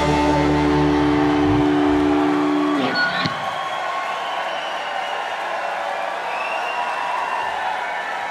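Live rock band's final chord on electric guitars and bass, held steady and then cut off sharply about three seconds in. A crowd then cheers, whoops and whistles.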